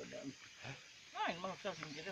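Quiet speech: a voice talking softly, mostly in the second half.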